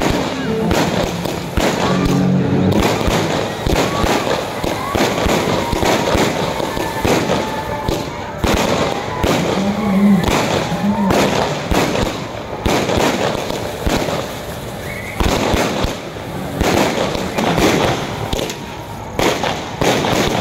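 Fireworks bursting in quick succession: a dense run of bangs over continuous crackling, going on throughout.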